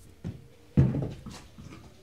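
A single dull thump about three-quarters of a second in, with a lighter knock before it and soft rustling around it.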